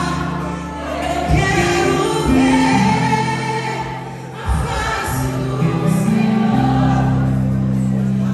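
A woman singing a gospel worship song through a microphone, over held backing chords that change every second or two.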